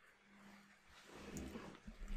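Near silence: room tone with a faint steady hum, and a faint soft sound starting about a second in.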